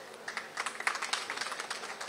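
Faint, scattered hand clapping from a gathered audience: a light, irregular patter of claps over a low crowd hum.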